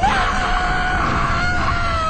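A young woman's long, drawn-out scream. It starts suddenly and is held on one pitch that slowly falls.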